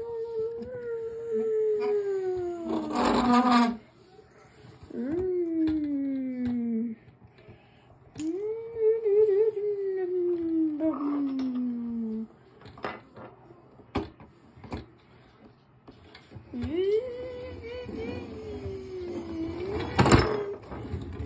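A child's voice imitating car engines. There are four drawn-out vroom sounds, each falling in pitch as if the car revs and slows. A short hissy burst closes the first one, and a few sharp clicks come between the third and the fourth.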